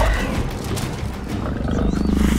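Movie sound effect of a large lion-like predator creature growling low and menacingly, over a dramatic film score.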